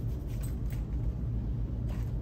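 Steady low background rumble of the room, with a few faint ticks.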